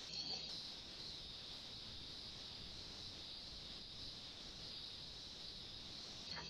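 Faint steady background hiss from an open microphone on a video call, brightest in a high band, with no speech.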